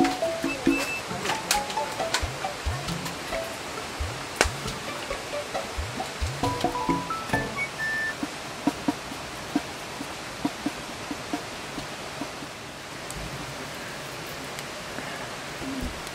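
Wood fire burning in a metal campfire stand, crackling with frequent sharp pops, the loudest about four seconds in, under light background music.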